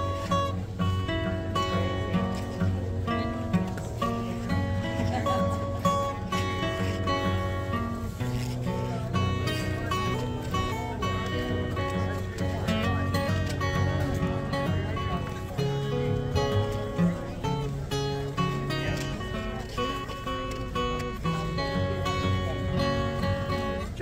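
Acoustic guitar played fingerstyle: a steady plucked bass line under a picked melody, an instrumental passage that runs on without a break.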